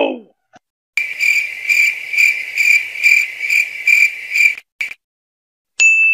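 Crickets-chirping sound effect: a steady high chirp pulsing a little over twice a second for three to four seconds, then stopping abruptly, the stock gag for an awkward silence. A short vocal cry trails off at the very start, and a bell ding rings just before the end.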